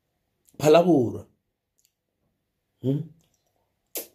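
A man's short vocal sounds with no clear words, a longer one about half a second in and a brief one near the end, with silence between. A sharp click at the very end as an aluminium drink can is set down on the table.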